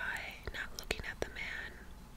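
Soft, close-up breathy whispering and mouth sounds with a few sharp, short mouth clicks, the tongue-clicking typical of ASMR reading.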